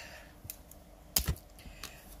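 A few light clicks and taps as a felt-tip alcohol marker is picked up and its cap pulled off, the sharpest click a little after a second in.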